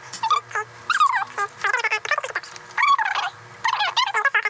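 Human voices sped up by time-lapse into fast, high-pitched chipmunk-like chatter, with quick rising and falling pitch.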